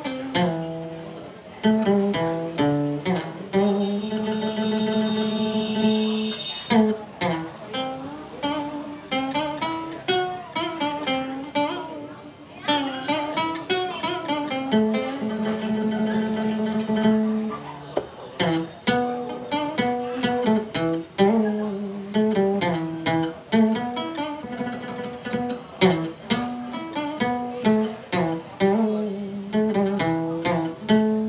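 Đàn nguyệt (Vietnamese moon lute) played as a plucked melody, with quick runs of notes broken by a few long held notes.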